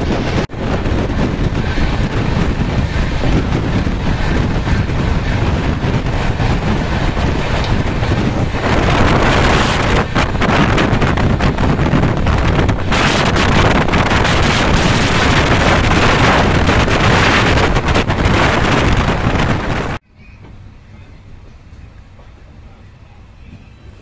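Wind buffeting the microphone and the running noise of a passenger train's coaches at speed, heard from an open train window. It grows louder and harsher from about nine seconds in, then cuts off suddenly near the end to a much quieter, lower rumble of the train.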